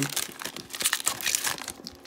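Clear plastic wrapper of a hockey card pack crinkling as it is handled and opened, a run of irregular crackles that thins out toward the end.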